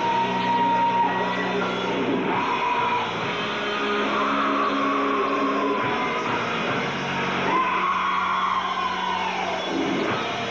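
A rock band playing live: long held electric guitar notes that bend up and down in pitch, over sustained low notes.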